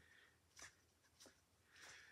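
Near silence broken by a few faint, brief taps and scrapes from a small plastic paint cup handled in a gloved hand.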